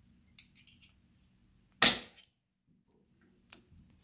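A single sharp metallic click a little under two seconds in, ringing briefly, from the quill feed trip mechanism of a Bridgeport milling head being worked by hand, with a few faint small clicks and taps of metal parts before and after it.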